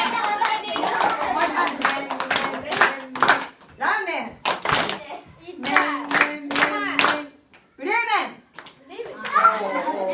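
Rhythmic hand clapping by a woman and a group of children, with voices singing along. There is a held sung note about six seconds in, and a voice swoops up and down about eight seconds in.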